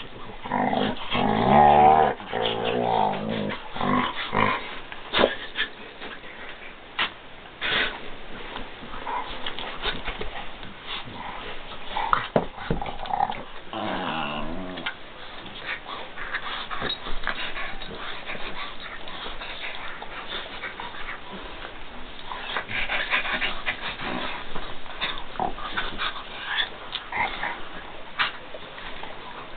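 Dogs play-fighting: a pit bull puppy and a small terrier mix wrestling and mouthing each other, with a long pitched vocal call about one to three seconds in and another shorter, wavering call around the middle. Scuffling and clicking from paws and bodies on the blanket and carpet runs throughout.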